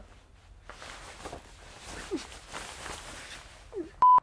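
Quiet background with faint scattered rustles and soft knocks, and two brief faint rising squeaks, one about halfway through and one near the end.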